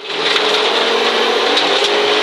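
Audi Quattro Group B turbocharged five-cylinder engine pulling hard at high revs, heard from inside the cabin over a steady rush of noise, its pitch easing slightly near the end.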